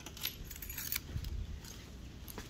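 Light metallic jingling and clicking during the first second, then a few dull low thuds as a person moves about.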